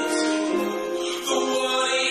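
Gospel music with sustained, choir-like singing voices holding long notes.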